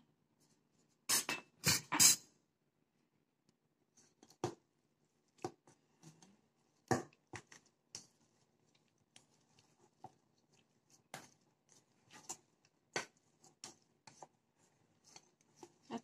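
A spatula and then a hand mixing sticky rice-flour dough in a stainless-steel bowl. Three sharp knocks come a little over a second in, followed by scattered fainter clicks and scrapes as the bowl and dough are worked.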